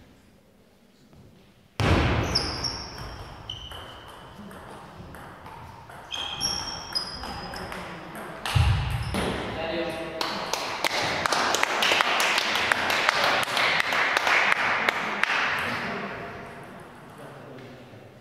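Table tennis rally in a gym hall: a plastic ball clicking sharply off bats and table, with short high squeaks of shoes on the floor. Later comes a denser stretch of rapid clicks and hiss, with voices in the hall.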